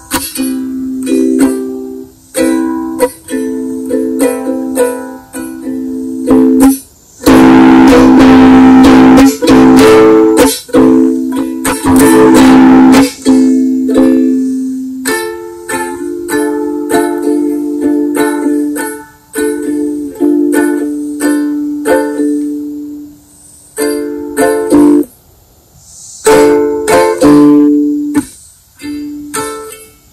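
Ukulele strummed in chords that start and stop abruptly. A third of the way in comes a stretch of fast, dense strumming loud enough to reach the recording's ceiling.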